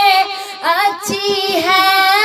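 A naat being sung: one voice holds a long wordless vowel, sliding up and down in a vocal ornament about halfway through, then settling on a held note.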